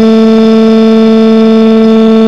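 A cartoon girl character's synthesized crying wail: one loud, long note held at a perfectly steady pitch, with a buzzy, electronic edge.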